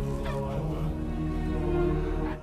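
Film soundtrack music with sustained held tones, and a brief warbling cry early on over it.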